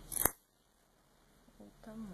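Scissors snipping through grosgrain ribbon: one quick cut about a quarter second in, ending in a sharp click of the blades.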